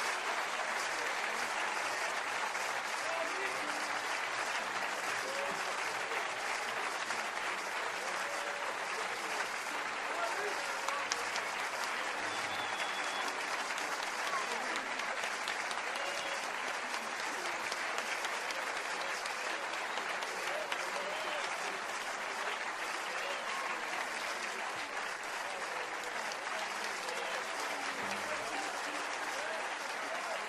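Concert audience applauding steadily, with voices calling out here and there in the crowd.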